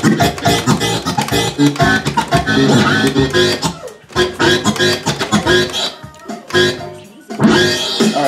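Music played through a DJ setup of turntables and mixer, with a beat and a bass line, dipping briefly in level about four seconds in and twice more near the end.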